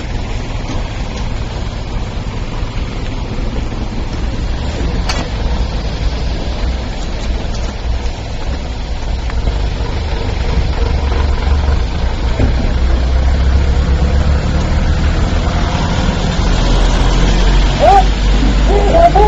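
Vehicle engine idling amid steady outdoor noise, its low rumble growing louder over the last several seconds, with a single sharp click about five seconds in.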